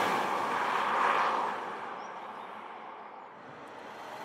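A compact SUV driving away past a roadside microphone: tyre and engine noise on tarmac, swelling once about a second in, then fading steadily as it recedes.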